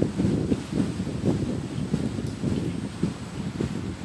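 Wind buffeting an outdoor microphone: an uneven, gusting low rumble.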